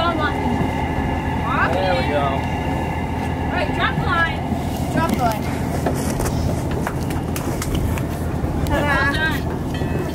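A steady low mechanical drone, with brief indistinct voices of people on deck calling over it a few times.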